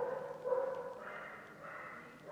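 A faint, drawn-out animal call, held in two stretches with a slight waver in pitch.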